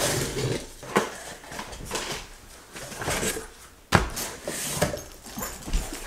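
A cardboard shipping box being opened and a padded guitar gig bag slid out of it: scraping and rustling of cardboard and fabric, with scattered clicks and a sharp knock about four seconds in.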